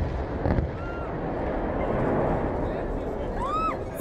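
The low boom of the dynamite demolition charge fades away in the first half-second, then a large crowd of onlookers is heard reacting loudly with many voices at once, with two short whistles, one about a second in and one near the end.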